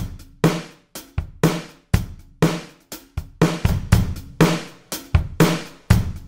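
Sampled acoustic drum kit (kick, snare and hi-hat) playing a simple beat from a software drum rack, a hit about every half second with a few extra hits in between.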